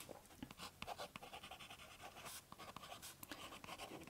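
Faint scratching of a Kaweco Sport fountain pen's extra-fine nib on sketchbook paper, a run of short strokes as a word is written.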